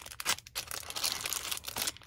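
Paper rustling and crinkling as a stack of loose papers is handled and set down, in irregular short crisp rustles.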